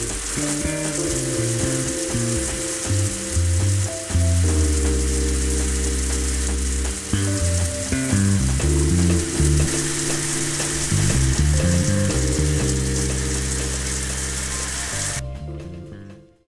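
Water spraying from a round overhead rain shower head in a steady hiss, which stops about a second before the end. Background music with a bass line plays throughout.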